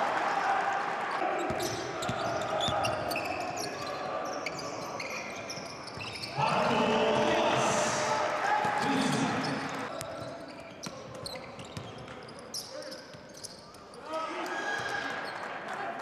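Live basketball game sound in an arena: a ball bouncing on the hardwood court amid voices from players and spectators. The sound swells suddenly louder about six and a half seconds in and dips for a few seconds before picking up again near the end.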